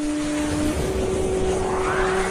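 Synthesized logo-sting music: held synth tones that step up to a new pitch under a low rumble, with a whoosh sweeping upward and swelling near the end.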